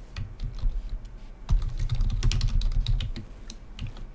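Typing on a computer keyboard: a quick run of keystrokes entering a name, the clicks coming thickest from about a second and a half in until shortly before the end.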